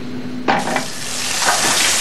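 Shower head spraying water in a steady hiss, starting suddenly about half a second in and growing slowly louder.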